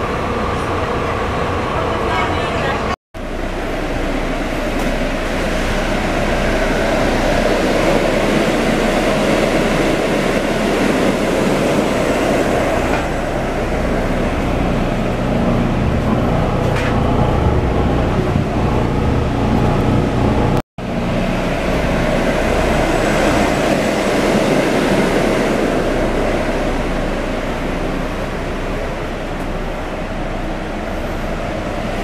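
Steady road and engine rumble of a Marcopolo Paradiso 1800 DD G8 double-decker coach on a Volvo B450R chassis, on the move. The noise is broken by two very short gaps, about three seconds in and about two-thirds of the way through.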